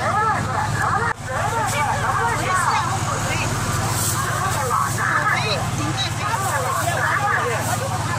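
Voices talking at a busy outdoor market stall, over a steady low hum.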